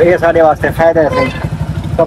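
Motorcycle engine idling steadily, with talking over it.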